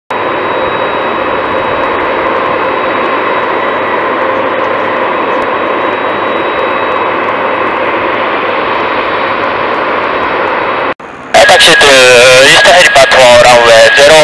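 Aerospatiale AS350B2 Ecureuil helicopter's turbine engine running steadily on the ground with a high whine before take-off. Near the end the sound cuts out briefly and a much louder, wavering passage with a voice-like sound follows.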